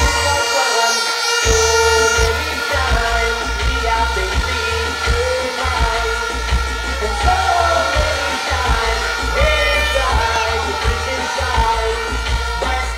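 Music with a steady bass beat and a singing voice; the bass beat comes in about a second and a half in.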